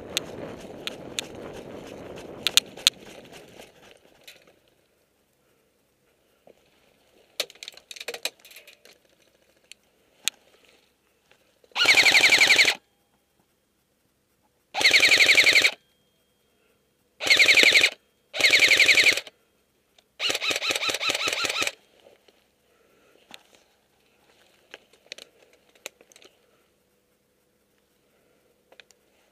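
An airsoft electric gun (AEG) firing five full-auto bursts in the middle of the stretch, each a rapid rattle of shots lasting about a second, the last one the longest. Scuffing movement noise fills the first few seconds.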